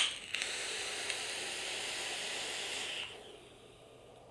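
Kanger Dripbox squonk mod firing its 0.2-ohm dual-coil RDA during a long draw: a steady hiss of air pulled through the atomizer and the sizzle of the wet coils. It lasts about three seconds, then stops.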